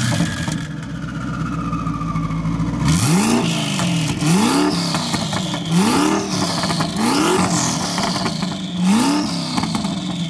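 Heffner twin-turbo first-generation Ford GT's 5.4-litre V8 idling, then blipped hard five times, about every second and a half, each rev rising and falling quickly. A whine falls in pitch after each blip.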